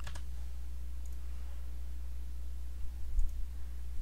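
A few faint computer mouse clicks and keystrokes, heard as thin clicks, over a steady low electrical hum on the microphone. There are a couple of soft low bumps about three seconds in.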